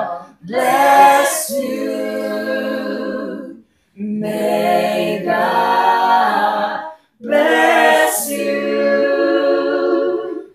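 A small mixed group of voices singing a birthday song a cappella, in three sung phrases with a short pause for breath between each.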